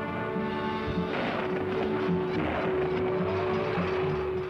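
Background music from the cartoon's score, built on one long held note, turning busier and fuller about a second in.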